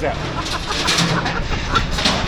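Steady street noise from passing traffic, with voices chattering in the background.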